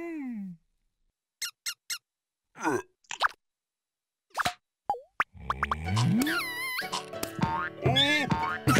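Cartoon sound effects: after a falling slide, mostly silence broken by a few short pitched blips and a downward-sliding boing. From about five seconds in, children's cartoon music comes in with sliding, squeaky cartoon voices over it.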